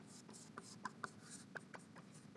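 Chalk writing on a blackboard: faint scratching strokes and a few light taps of the chalk against the board.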